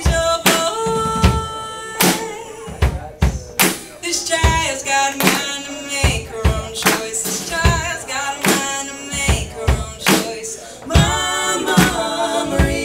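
Live rock band playing a song: electric guitars, electric bass and a drum kit keeping a steady beat, with singing over the top.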